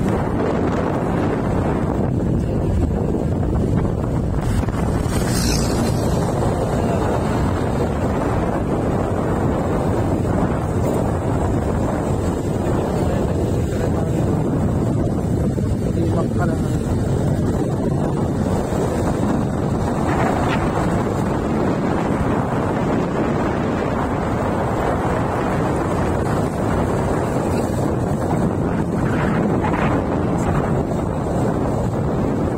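Wind buffeting the microphone on a moving motorcycle: a steady, loud low rush that drowns out any clear engine note.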